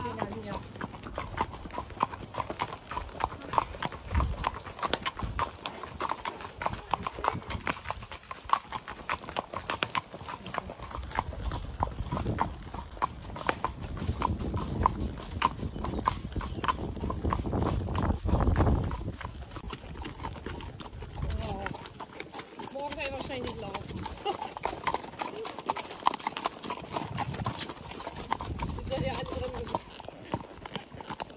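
Hooves of Haflinger horses clip-clopping on a paved road in a steady run of hoofbeats, heard from on horseback.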